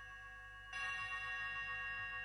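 Music: bell-like metallic percussion tones ringing out and dying away slowly. About two-thirds of a second in, a second, brighter cluster of ringing tones swells in and sustains.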